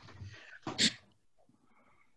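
A person sneezing: a breathy build-up, then one sharp hissing burst just before a second in.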